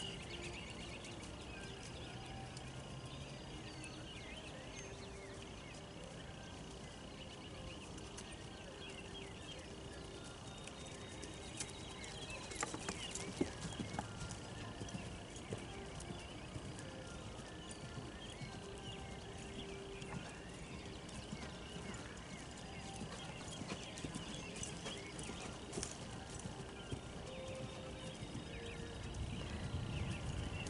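Hooves of a ridden horse moving over grass turf: faint, soft hoofbeats with small clicks, a little busier partway through.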